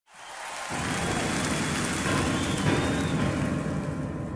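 Live concert audience applauding, a dense, even clatter of clapping that fades in over the first half-second and then holds steady.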